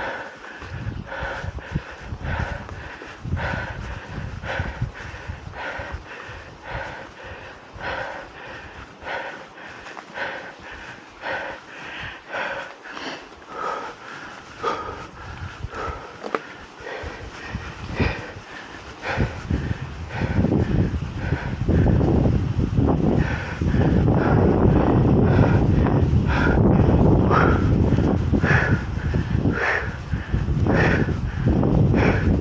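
A mountain biker breathing hard in a steady rhythm, about two breaths a second, while pedalling. From about two-thirds of the way in, loud wind rush on the microphone takes over.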